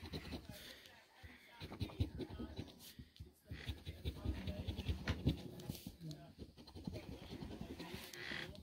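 A large metal coin scratching the coating off a paper scratch-off lottery ticket: quick, rough strokes in runs, with brief pauses between them.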